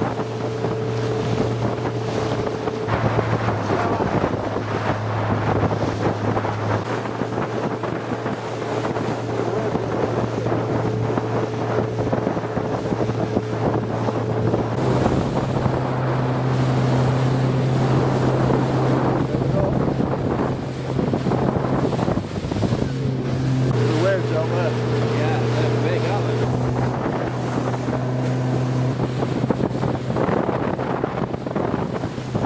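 A RIB's outboard motor running under way: a steady drone whose pitch shifts a few times as the throttle changes, with a brief dip about three-quarters of the way through before it picks up again. Wind buffets the microphone and water rushes past the hull.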